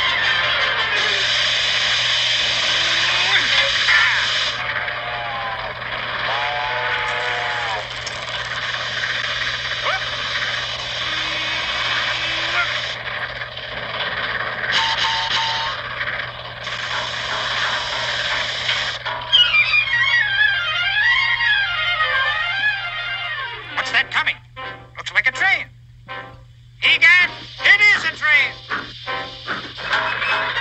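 Cartoon soundtrack of music mixed with a dense, steady noise through most of it. Near the end come wavering, gliding tones, then choppy stop-start bursts.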